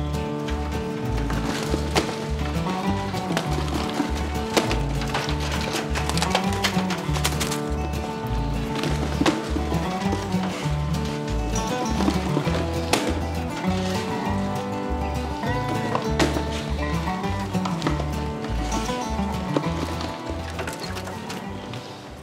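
Background music: an instrumental track with a steady, evenly repeating bass line that fades down near the end.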